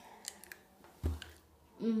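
Faint mouth clicks and a soft knock as a jelly bean is put in the mouth and bitten, then a closed-mouth 'mmm' near the end.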